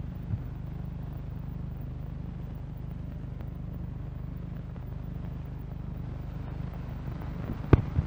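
Steady low hum with faint hiss from an old film soundtrack, with no music or voice. Two sharp clicks near the end, at the splice into the next advert.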